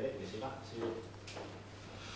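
Faint, distant voice, off the microphone, during a lull in a press conference, over a steady low electrical hum.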